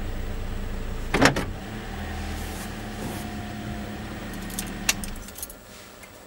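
A Toyota Corolla's four-cylinder engine idling in the cabin, with a loud clunk about a second in and a few sharp clicks near the end, where the engine rumble falls away.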